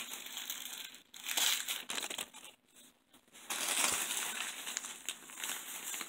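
A plastic bag crinkling in irregular bursts as hands grab and handle it, with a brief pause about halfway through.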